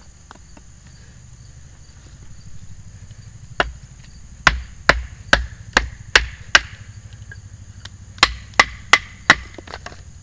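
A wooden baton striking the spine of a Cold Steel Bushman fixed-blade knife to split a piece of wood on a chopping block: seven sharp knocks about half a second apart, a short pause, then four more.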